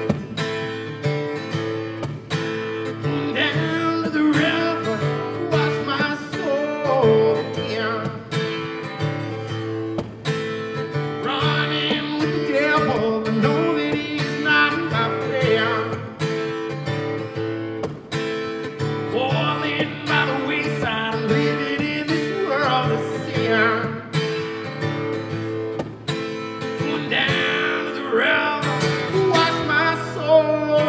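Live acoustic guitar, strummed steadily, with a man singing over it in phrases separated by short guitar-only gaps.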